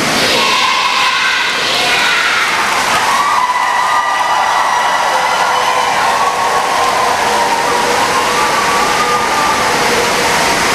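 A large crowd of children clapping and cheering, with a few high voices held above the noise.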